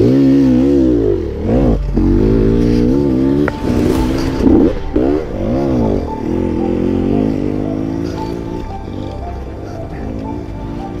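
1995 Honda CRE 250 two-stroke single-cylinder engine revving as the bike pulls away through mud, its pitch rising and falling again and again with the throttle.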